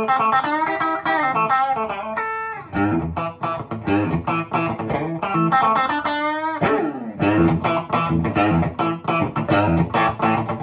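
Fender Noventa Telecaster with a single Noventa P90-style pickup, played clean through a Boss Katana 50 Mk II amp with a touch of reverb and the tone control about halfway. It plays a lead line of notes with vibrato and string bends, a long bend up at about six seconds in, then a brief pause before the playing picks up again.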